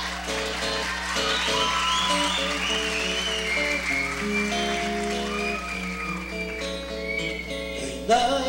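Instrumental break in a live song: acoustic guitar accompaniment with a high melody line gliding above it, and no singing.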